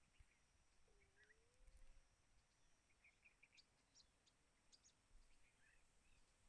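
Near silence: faint room tone with a few short, faint chirps in the background.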